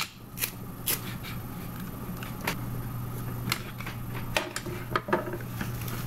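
Clear sticky tape pulled and torn off a desk dispenser while paper tubes are handled: a scattering of short crisp rips and rustles, over a steady low hum.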